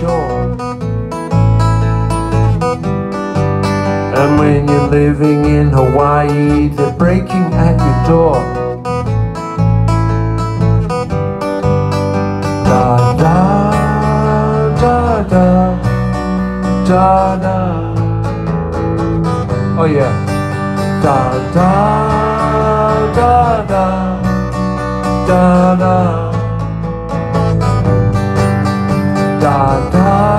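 Live acoustic guitar being strummed steadily, with a sliding melody line rising and falling over it from about halfway through.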